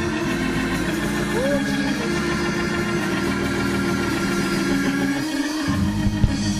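Church organ holding low sustained chords, cutting out briefly near the end and then coming back in.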